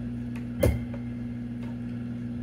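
A steady low hum with a few faint clicks and one sharper knock a little over half a second in.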